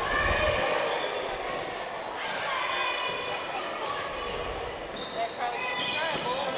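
A basketball being dribbled on a hardwood gym floor, with low thuds from the bounces.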